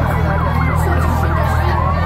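Police car siren in a fast yelp, its pitch rising and falling about four times a second, over a steady low rumble.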